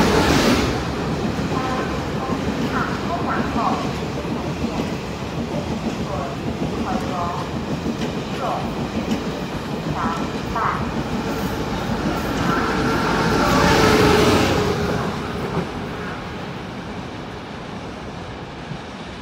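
Tze-Chiang express push-pull train running through the station at speed without stopping. Its running noise is loudest as it passes at the start, swells again about fourteen seconds in, then fades as the train draws away.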